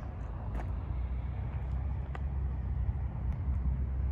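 Wind buffeting the microphone on an exposed cliff top: an uneven low rumble that grows a little stronger about half a second in, with a few faint ticks.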